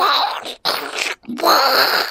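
A man's wordless vocal noises muffled by a pacifier in his mouth: three drawn-out sounds, the last the longest.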